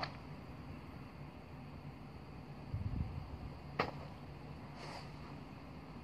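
A person moving on metal crutches over artificial turf: a dull thump about halfway through and a single sharp click just before four seconds in, over a steady low rumble.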